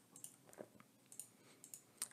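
Faint computer keyboard keystrokes: a handful of light, scattered clicks in near silence.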